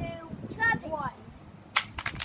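A Samsung flip phone dropped onto a concrete sidewalk hits with one sharp clack near the end, the impact knocking its battery cover loose. A child's voice is heard in the first second.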